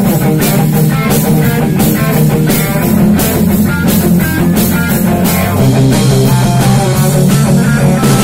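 Rock band playing an instrumental passage: electric bass, two electric guitars and a Yamaha drum kit, with a steady drum beat and no singing.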